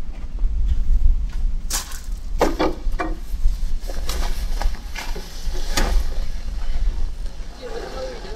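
Several knocks and rustles from a person climbing into a car seat, heard over a steady low rumble.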